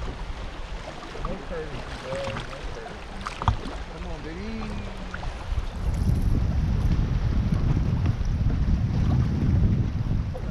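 Wind buffeting the microphone over choppy water lapping at a small boat's hull. About six seconds in, the wind's low rumble grows much louder. A single sharp knock sounds about three and a half seconds in.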